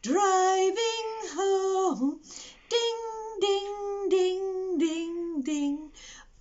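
A woman singing a slow children's song unaccompanied, in two long, held phrases with a short breath about two seconds in.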